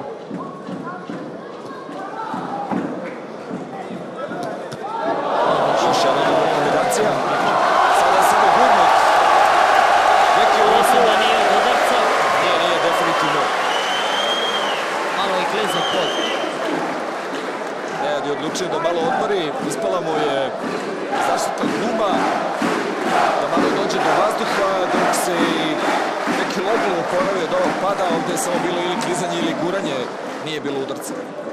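Boxing arena crowd, murmuring at first, then rising about five seconds in into loud cheering and shouting that peaks a few seconds later. The cheering goes on through the rest, mixed with many sharp claps or smacks.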